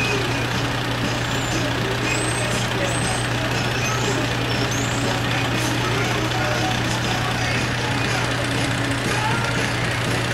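Steady low drone of a fire truck's diesel engine idling at the scene, unchanging in level throughout.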